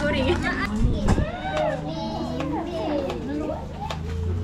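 Overlapping voices of several people, children among them, chattering and calling out, with background music underneath.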